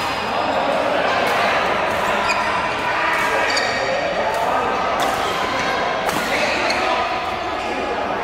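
Badminton rackets hitting shuttlecocks at irregular intervals from several courts at once, the sharp hits ringing in a large hall, over a steady background of players' voices.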